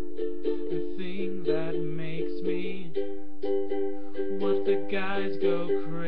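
Ukulele playing a steady, repeating chord pattern, the same few chords cycling over and over.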